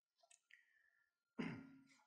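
Near silence in a pause between sentences, broken by a short faint breath about one and a half seconds in.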